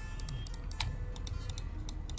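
Logitech MX Master 2S wireless mouse buttons clicked over and over, a quick uneven run of light clicks about five a second; the switches are clicky, not very silent.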